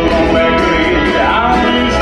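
A country-Americana band playing live with electric guitars, bass and drums, and a man singing lead into the microphone.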